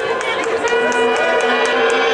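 Marching band playing: brass holding sustained chords over a steady, quick tick of drums, with voices mixed in.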